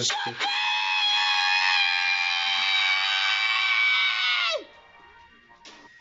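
A man's high-pitched scream held on one note for about four seconds, then dropping sharply in pitch and cutting off.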